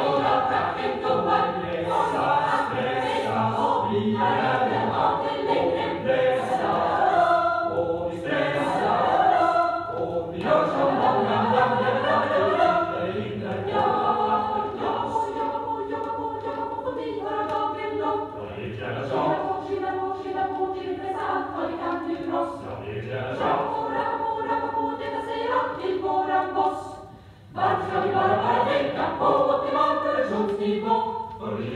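Choir singing in Swedish, played from a vinyl LP. The singing breaks off briefly near the end, then comes back in.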